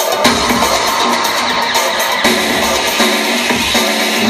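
Synthpop band playing live through a club PA: synthesizers over a steady electronic drum beat, an instrumental passage with no vocals.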